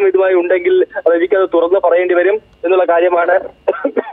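Speech only: a news report read aloud in Malayalam.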